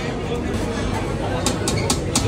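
Background chatter of voices with no clear words, and a quick run of short, sharp clicks in the last half second.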